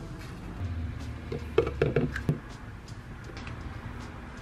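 A plastic measuring scoop clicking and knocking against a plastic powder tub while powder is scooped out, a handful of light knocks in the middle, over a low hum that stops partway through.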